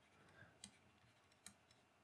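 Near silence with two faint, short clicks, about half a second and a second and a half in.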